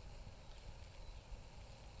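Faint outdoor background noise: a low, even rumble with no distinct events.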